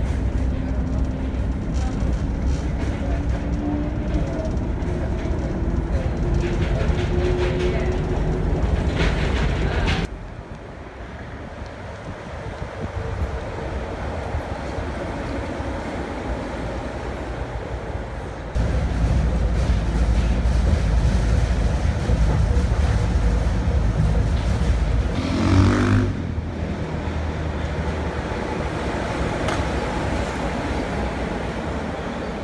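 Straddle-beam monorail train running along its elevated concrete guideway: a low rumble, with a motor whine that rises slowly in pitch as it gathers speed. The train is heard in several cut-together passes, and a brief louder tone sounds near the end.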